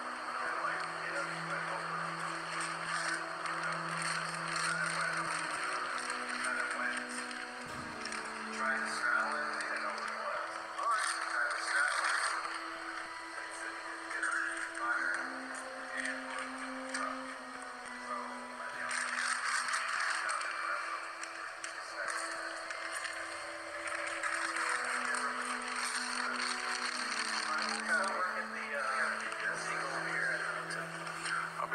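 Slow background music of long held low notes that step to a new pitch every few seconds, over the rough, fluctuating noise of a body-worn camera's microphone with indistinct voices.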